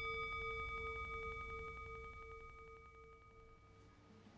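A metal singing bowl ringing out after a single strike: a steady low tone with a slow waver and several higher overtones, the highest dying first, the whole slowly fading away.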